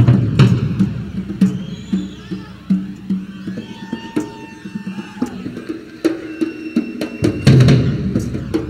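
Rock drum kit played solo: irregular strikes on the tom-toms and bass drum. The playing is dense and loud at the start, thins out to sparser, quieter hits through the middle, and builds to another loud flurry near the end.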